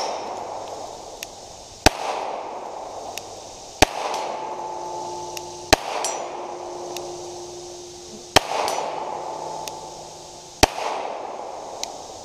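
Five pistol shots from a Glock 30 in .45 ACP, fired one at a time about two seconds apart, each followed by a trailing echo.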